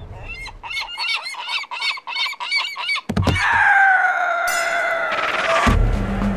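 Cartoon seagulls' honking calls: a fast run of short squawks, about four or five a second, for the first three seconds, then a knock and one long wavering call that slowly falls in pitch.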